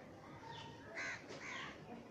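A bird calling outdoors: two loud calls about a second in, half a second apart, with fainter chirps around them.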